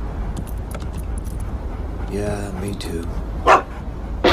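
A dog vocalizing over a steady low rumble: a short pitched sound about two seconds in, then a single loud bark near the end.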